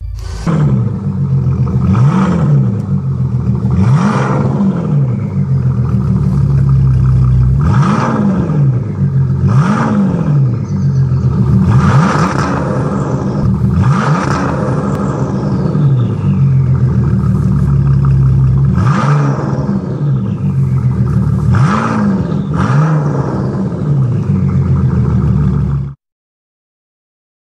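Bentley Continental GT engine and exhaust being revved over and over: the loud running note climbs in pitch and falls back roughly every two seconds.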